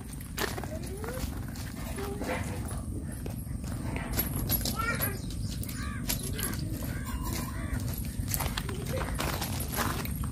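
Faint voices in the background over a steady low rumble, with scattered short sharp clicks.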